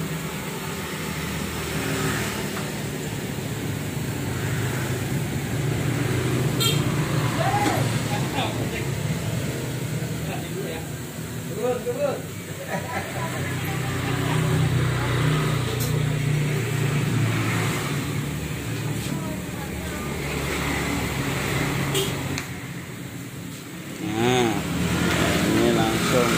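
A steady low engine hum, with indistinct voices over it now and then.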